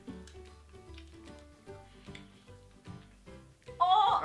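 Soft background music: a light melody of short plucked notes over a low, repeating bass.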